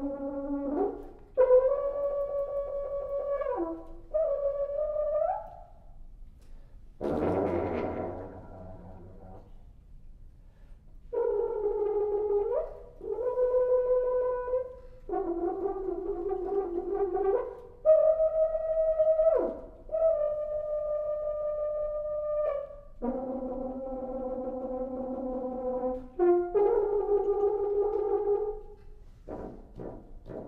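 Solo French horn playing a series of held notes with short breaks between them, several notes sliding down in pitch at their ends. About seven seconds in there is a rough, noisy blast, and near the end a quick run of sharp taps.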